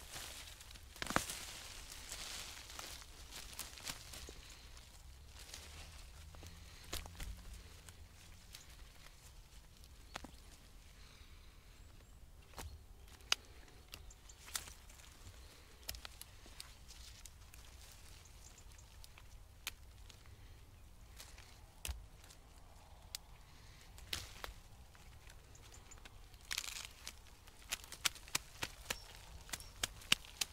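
Jerusalem artichoke plant being dug up with a garden fork in woodchip-mulched soil. Scattered clicks and crunches of tines and woodchips, with rustling about a second in and again near the end as the plant is pulled up and soil is shaken off its roots and tubers.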